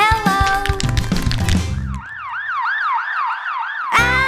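Children's song with singing, which stops about halfway through. A cartoon siren sound effect then follows, quick rising-and-falling sweeps, three to four a second, for about two seconds.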